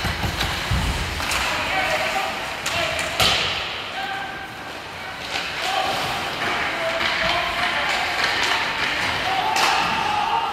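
Ice hockey play in a rink: sharp knocks of sticks and puck against the boards and glass, the strongest about three seconds in, over a steady arena hum, with players and spectators calling out now and then.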